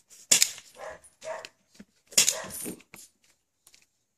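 German shepherd barking: two loud barks about two seconds apart, with quieter sounds between them.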